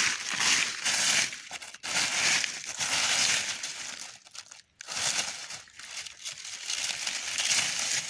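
Dry fallen leaves crunching and rustling in irregular bursts, with a short lull about halfway through.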